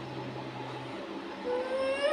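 A person's voice in long held tones: a low, steady hum for about the first second, then a higher drawn-out vocal tone rising from about one and a half seconds in.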